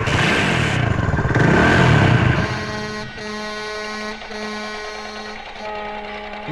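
Motorcycle engine starting up and revving for about two and a half seconds, then giving way to background music with long held notes.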